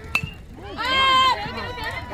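A metal bat hits a pitched ball once with a sharp ping that rings briefly. About half a second later a spectator lets out a loud, drawn-out yell for nearly a second, followed by shorter shouts.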